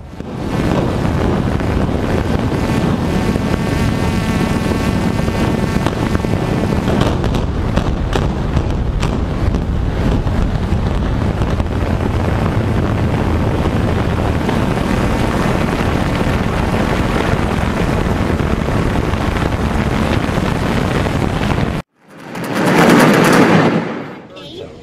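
A high-rise building implosion: demolition charges crackle and the collapsing structure makes a long, loud, continuous rumble. After a sudden cut near the end, another loud blast rises from a second building implosion.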